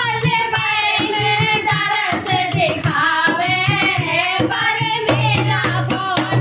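Women singing a Hindi devotional bhajan together, with hand claps and small hand cymbals keeping a quick, even beat.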